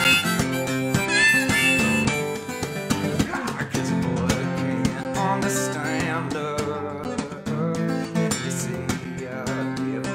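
Harmonica, played in a neck rack, over a strummed acoustic guitar; the harmonica line is strongest in the first couple of seconds.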